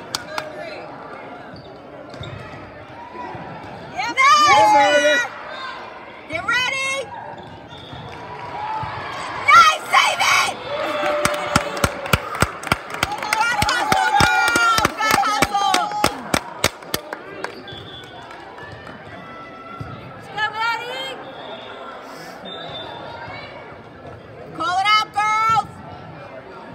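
Players and spectators calling out and cheering in a big gym. In the middle comes a quick, uneven run of about twenty sharp slaps, lasting several seconds, over many voices at once.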